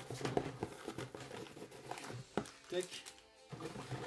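Crinkling and rustling of a fishing lure's plastic packaging being handled: a run of small crackles and clicks that thins out about two and a half seconds in.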